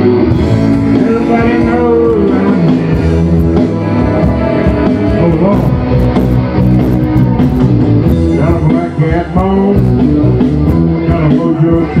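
Live band playing a rock-and-roll/blues number, with guitar over drums.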